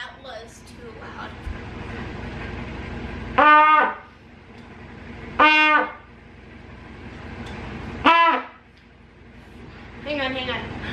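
A beginner's brass trumpet blowing three short, loud notes at about the same pitch, each about half a second long and a couple of seconds apart.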